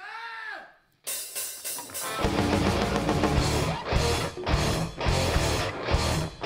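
A heavy metal band starts a song live. A short tone rises and falls in pitch, then about a second in the electric guitar comes in. About two seconds in the full band joins at full volume, with drum kit, cymbals and bass.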